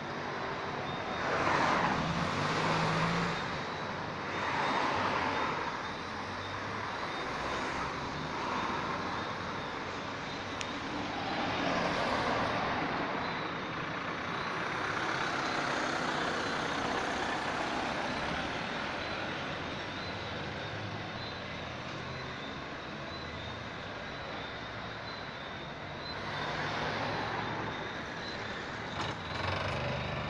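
Road traffic: vehicles passing one after another, each a swell of noise that rises and fades, the loudest about two seconds in.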